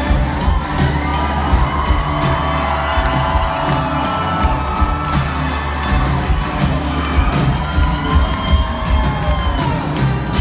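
Live rock band with electric guitar, bass and drums playing loudly, heard at close range from in front of the stage, with the crowd cheering and whooping over the music.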